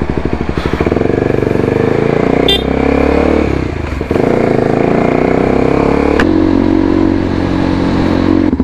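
Kawasaki Ninja sportbike engine pulling away from a standstill and accelerating through the gears. The engine note breaks and drops at gear changes about a second in, around four seconds, and around six seconds.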